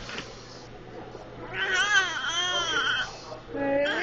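A baby babbling in a crying voice: one long, high-pitched, wavering stretch starting about a second and a half in, then a shorter, lower sound near the end.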